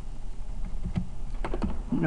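A few computer keyboard clicks, two about a second in and a quick cluster in the second half, over a steady low hum.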